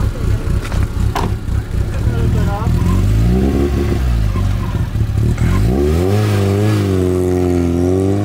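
Fiat Seicento rally car's small four-cylinder petrol engine idling with an uneven pulse, then revved, its note rising about three seconds in, dropping back and climbing again as the car accelerates away.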